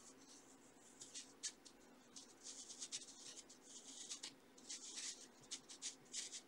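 Faint pencil scratching on sketchbook paper in quick, short strokes, several a second, in runs with short pauses.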